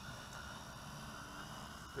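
Quadcopter hovering, its four RCTimer 5010 motors with 17-inch propellers making a steady hum with several held tones over a haze of wind noise.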